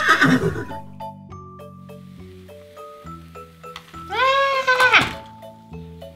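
Light background music of separate held notes, with one loud horse whinny about four seconds in.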